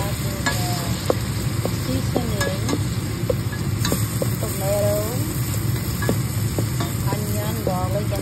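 Chopped tomatoes, onion and garlic sizzling in a hot stainless steel pan while being stirred, with the utensil scraping and giving short squeaks against the metal.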